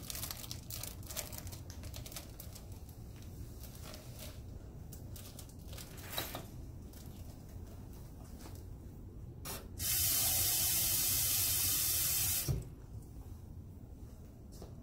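Light clicks and rustles of a plastic bag being handled on a glass beaker. About ten seconds in, a faucet runs loudly for about two and a half seconds as the beaker is filled with tap water, then shuts off suddenly.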